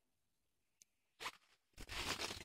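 Near silence for about a second and a half, then a brief rustle. Near the end comes uneven rustling and handling noise as the phone is moved.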